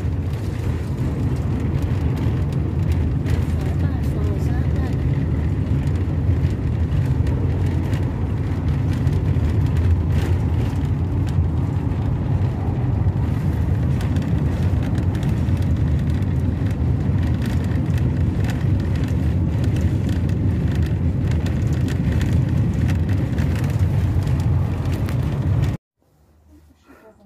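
Steady road noise inside a moving motorhome's cab: a low engine and tyre rumble that cuts off suddenly near the end.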